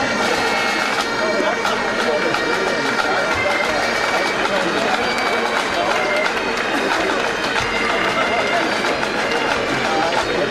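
Pipe band playing bagpipes with sustained drones and chanter, over crowd voices.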